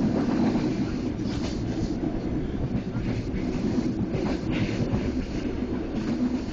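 Passenger train running at speed, heard from inside a carriage: a steady rumble of wheels on the track with air rushing past.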